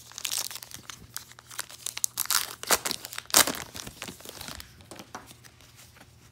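Foil wrapper of a 2019 Topps Allen & Ginter trading-card pack being torn open and crinkled by hand: a run of crackling rips, loudest about three and a half seconds in, thinning out near the end.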